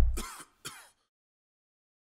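The last low note of the outro music dies away, then a person clears their throat with two short coughs, less than a second apart.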